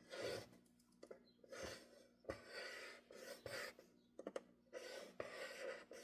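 Faint, short scraping strokes of a scoring tool drawn through cardstock along the grooves of a Scor-Pal scoring board, a stroke every half second or so, with small clicks between as the tool is lifted and set down.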